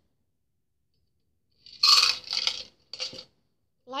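Metallic clinking and rattling from a steel cocktail shaker tin and its spring strainer being handled and set down. It comes in two bursts, about two seconds in and again a second later.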